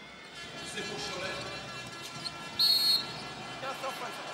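Basketball referee's whistle: one short, sharp blast about two and a half seconds in, calling an offensive foul.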